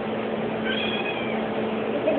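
Blue point Siamese cat giving one high, drawn-out meow about a second in, over a steady low hum.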